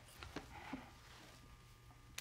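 Near silence: room tone, with a few faint small clicks in the first second.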